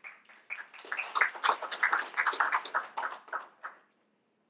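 A small audience applauding briefly: scattered clapping that starts about half a second in, fills out and dies away near the end.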